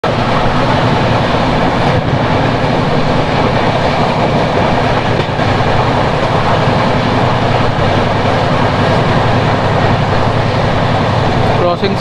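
Steady, loud running noise of the Sealdah Duronto Express at speed, heard from an open coach door: wheels rolling on the rails mixed with rushing wind. A voice speaks briefly at the very end.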